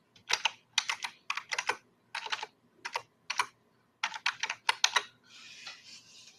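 Computer keyboard typing in quick bursts of keystrokes, with short pauses between the bursts.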